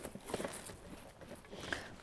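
Faint rustling with a few light clicks as hands scrape back potting soil and compost inside a stone planter.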